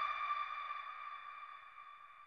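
Ringing tail of a logo sting sound effect: a single high, pure tone with overtones, fading away steadily.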